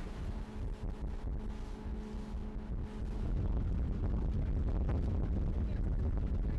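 Wind on the microphone over a rigid inflatable boat's engine running, a low rumble with a faint steady hum. The rumble gets louder about three seconds in.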